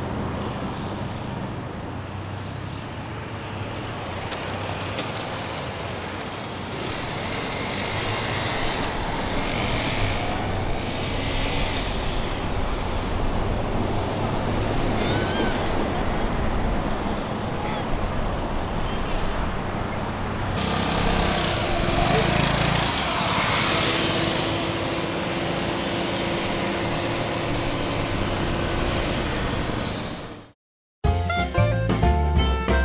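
A Vespa 946 scooter's small single-cylinder engine running at low speed under steady outdoor noise, with indistinct voices in the background. The noise gets louder and brighter about two-thirds of the way through.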